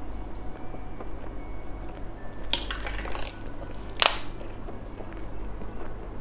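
Close-miked eating sounds of soft filled gummy candy: faint mouth clicks and small ticks, a short rustling burst about two and a half seconds in, and a sharp, louder clatter about four seconds in.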